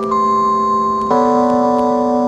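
Slow, dark instrumental background music: held chords with a single sustained melody note above, the chord changing about a second in.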